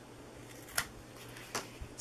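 Scissors snipping through cardstock: a short, sharp cut a little under a second in and a couple of fainter clicks near the end.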